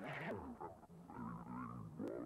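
A man's voice, drawn-out and indistinct, with held and wavering tones rather than clear words.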